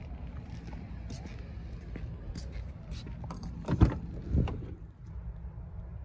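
A car's trunk lid slammed shut about four seconds in, giving a sharp thump that is the loudest sound. Half a second later comes a softer clunk, with small handling clicks and a steady low rumble around it.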